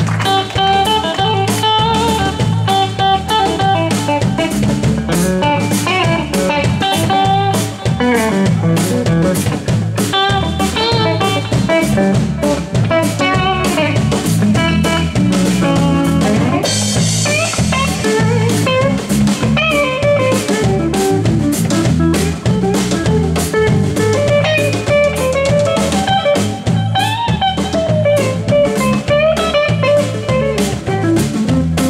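Live blues-rock band playing an instrumental break: an electric guitar solo runs over a steady drum-kit beat. A cymbal wash lasting a second or so comes about halfway through.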